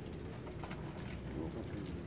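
A dove cooing low in the background, over a steady faint hiss with scattered drips of water.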